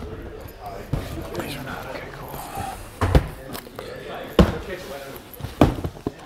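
Cardboard shoe boxes knocking on a countertop as they are handled: a few sharp thuds, about three, four and a half and five and a half seconds in, over background talk.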